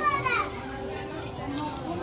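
A high-pitched voice trailing off in the first half-second, then faint voices of people in the background.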